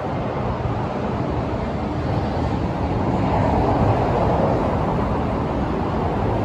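Steady roar of highway traffic, an even rushing noise without separate events.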